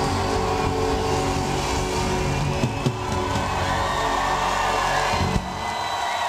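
Live band ringing out the end of a song with sustained bass and chords over crowd noise; a little past five seconds in the band stops and the crowd cheering carries on.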